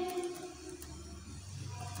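A pause in a woman's speech. Her drawn-out last word fades out right at the start, leaving faint room tone with a low hum until she speaks again.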